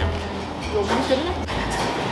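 A woman speaking a few words over a steady low background hum.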